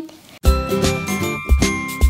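A short, bright musical jingle for a segment title starts about half a second in, just after a sung word ends: sustained high ringing notes over a low beat.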